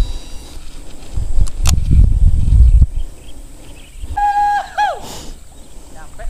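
Handling noise on the camera's microphone: a couple of sharp knocks and a loud low rumble as the camera is moved and set down on the ground. Just after the middle comes a short whistled call, one held note followed by a falling one.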